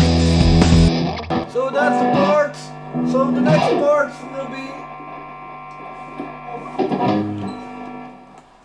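Distorted electric guitar with a DigiTech Trio+ backing of drums and bass playing a heavy rock groove that stops abruptly about a second in. After that, single guitar notes and chords ring out more sparsely and quietly.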